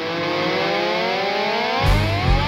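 Distorted electric guitar holding a chord that glides slowly upward in pitch. Near the end, drums and bass come in as a heavy rock instrumental starts.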